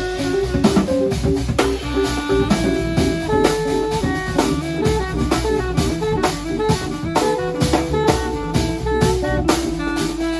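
Live improvised jazz: a drum kit keeps up busy drum and cymbal strokes under an upright bass, a hollow-body electric guitar and a saxophone playing together.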